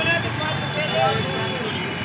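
A motorcycle riding past close by at low speed, its engine running under a steady outdoor hubbub with people's voices talking in the background.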